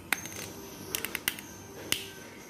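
Sharp clicks of a plastic spectacle frame and its lens being handled as the lens is pressed into the rim: one just after the start, a quick run of four or five about a second in, and another near the end.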